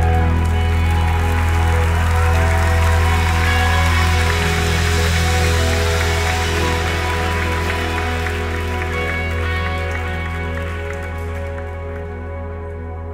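Live worship band holding a sustained chord on bass and keyboard pad as a loud section ends, the cymbal wash fading out near the end and the overall sound gradually dying down, with congregation applause mixed in.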